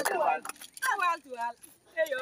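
A person's voice in a few short phrases, the pitch falling in each, with pauses between them.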